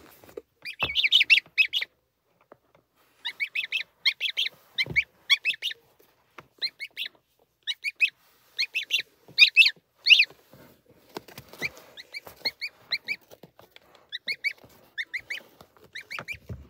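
Newly hatched gosling peeping: runs of short, high-pitched calls in quick clusters separated by brief pauses, growing fainter in the last few seconds. A couple of soft thumps come in among the calls.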